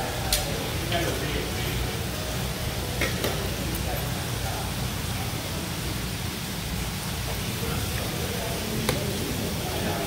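Restaurant room noise: a steady hum with faint background chatter and a few light clicks, typical of tongs and utensils at a buffet.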